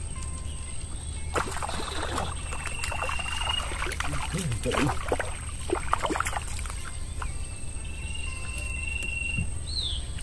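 A hooked fish thrashing and splashing at the water's surface in irregular bursts for about five seconds, from just after the start to past the middle, over a steady low hum. A thin, steady whistle-like tone sounds twice, the second time ending in a short rising-and-falling sweep near the end.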